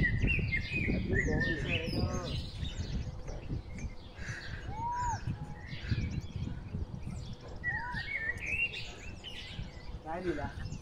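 Wild birds chirping and calling, with short arched whistles about five and eight seconds in, over a steady low rumble.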